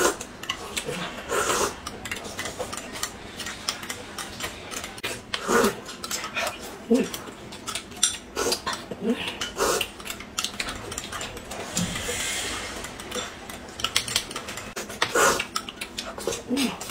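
Eating sounds at a table: metal spoons clinking against glass cups and chopsticks tapping a plate in many small clicks, with several short slurps of soup and chewing.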